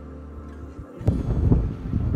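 A low steady hum gives way, about a second in, to wind buffeting the microphone: a loud, gusty, uneven rumble.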